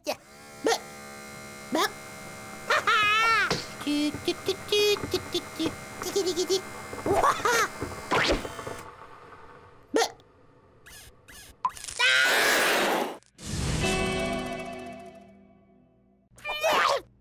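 Cartoon soundtrack: background music with a cartoon chick's wordless gliding squeals and vocal sounds, a whoosh about twelve seconds in, then a long tone that fades away.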